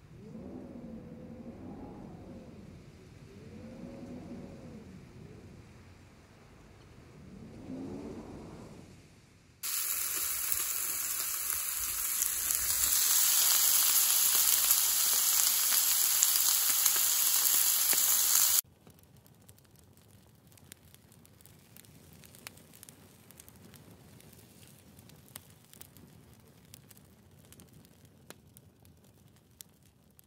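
Pork belly slices sizzling on a grill pan: a loud, steady hiss that comes in suddenly about ten seconds in, grows louder a few seconds later, then cuts off. Before it come a few wavering pitched calls, and after it only faint scattered clicks and rustles.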